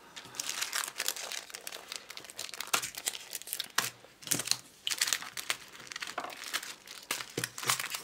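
Plastic sticker packaging crinkling and rustling in the hands as it is handled, in an irregular run of crackles with brief pauses.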